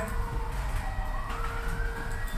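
Faint wail of an emergency vehicle siren, its pitch sinking and then rising again, over a low steady rumble.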